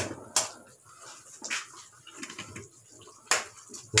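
A metal spoon stirring thick tomato sauce in an aluminium frying pan, with a few sharp clicks as the spoon knocks against the pan at uneven intervals.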